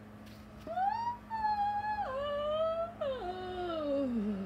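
A woman's voice acting out a long, exaggerated yawn: starting just under a second in, the pitch jumps up high, holds with a couple of steps down, then slides steadily downward.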